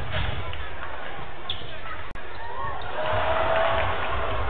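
Basketball game sound in an arena: crowd noise and shouting voices, with a basketball bouncing on the hardwood court. The sound drops out for an instant about halfway through, and the crowd grows louder near the end.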